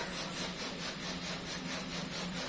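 Continuous rasping noise in a fast, even rhythm, like sawing, with a steady low hum underneath.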